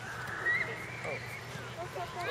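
A long, drawn-out high-pitched shout from someone on or beside a youth soccer field, held for well over a second and rising slightly in pitch, heard over the steady outdoor background of the game.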